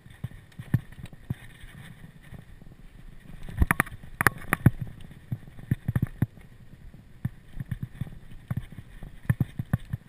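Mountain bike rattling over a bumpy dirt trail: irregular sharp knocks and clatters from the bike and its handlebar-mounted camera over a low rumble of the tyres, with bursts of heavier knocking about four seconds in and again near the end.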